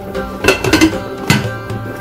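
A glass pot lid clinking twice against a pan, about half a second in and again just past the middle, over steady background music.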